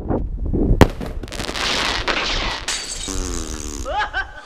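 A 26 mm flare pistol fired into the sky: a sharp crack less than a second in, then the flare hissing for about a second and a half. A man's drawn-out voice follows near the end.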